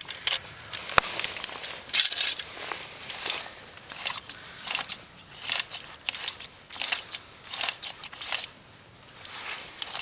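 Scratchy rustling and small clicks from hands working an ice-fishing tip-up's line spool as the line pays out into the hole under a sounder weight, with one sharp click about a second in.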